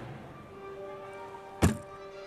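A gymnast's feet landing a jump on the balance beam: one sharp, loud thud about three-quarters of the way through. Music with long held notes plays underneath.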